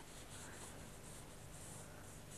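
Faint swish of a paintbrush laying watery paint across paper, in soft repeated strokes.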